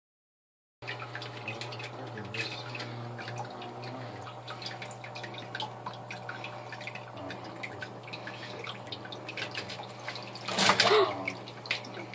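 Hang-on-back aquarium filter pouring a steady trickle of water into the tank over a low steady hum. About ten and a half seconds in, a loud brief splash as a juvenile alligator lunges and snatches a toad from the water.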